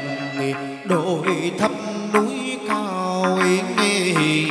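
Vietnamese chầu văn ritual music: a melodic line that slides and bends in pitch, over sharp percussive strikes.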